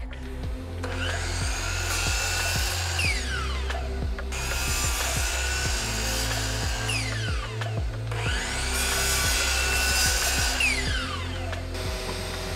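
Miter saw cutting boards to length three times. Each time the motor runs up, the blade cuts through, and then a whine falls as the blade spins down after the trigger is released.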